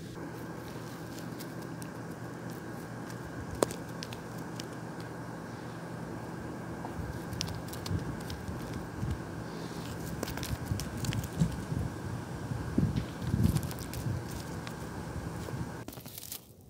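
Rustling and light crackling of grass and dry dirt as plastic toy horse figures are walked along the ground by hand, with scattered sharp ticks. The rustling gets busier about halfway through, over a steady low hum.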